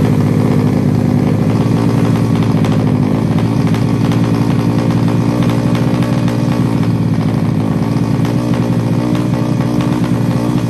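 Drag-racing motorcycle's engine running steadily at idle, its pitch holding level.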